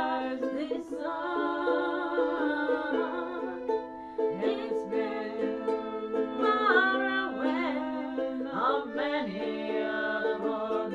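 Red button accordion holding sustained chords and a ukulele playing together, with two women singing over them.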